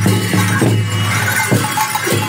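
Newar dhime drum beaten in a driving rhythm with clashing cymbals ringing over it, the processional music that accompanies a Lakhey dance.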